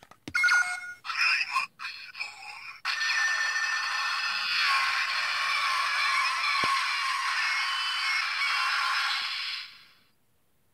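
Electronic sound effects from the Bandai DX Climax Phone toy's small speaker: a few short beeps and clicks, then from about three seconds in a dense, tinny run of effects with no bass that cuts off just before the end.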